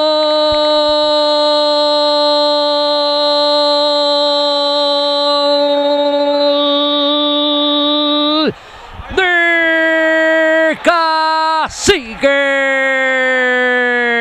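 Male football commentator's drawn-out goal call: one long held shout of "gol" lasting about eight and a half seconds. After a quick breath come several shorter held shouts, the last one falling in pitch as it ends.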